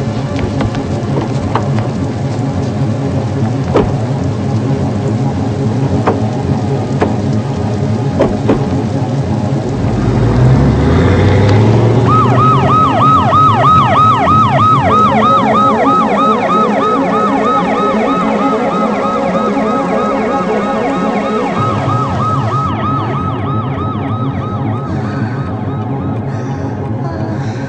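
A siren sounding in rapid whooping sweeps, each jumping up and falling, several a second. It starts about halfway through over a steady noisy background, just after a low rising rumble.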